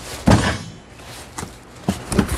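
A cardboard parts box set down with a single heavy thunk about a third of a second in, followed by a brief scrape of cardboard and a couple of light knocks as boxes are shifted.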